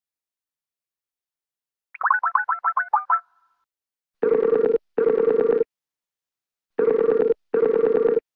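Skype call sounds: a quick run of about eight short, bright blips about two seconds in, then the Skype ringtone sounding in double rings, two pairs of them.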